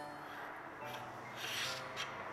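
A handle being twisted and rubbed against its screw mount on a Moza Air gimbal's crossbar, with two short scrapes; the handle is not screwing in any further. Faint background music under it.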